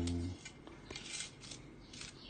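A man's voice trails off at the start. Then come soft rustling and a few light clicks of small things being handled, the clearest about a second in.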